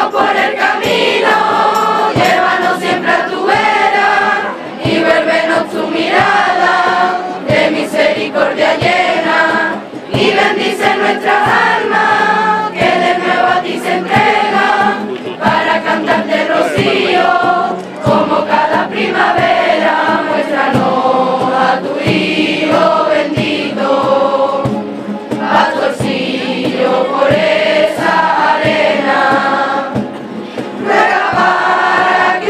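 A group of schoolchildren, boys and girls together, singing a devotional Rocío song as a choir to strummed guitar, in continuous phrases with short breaks for breath.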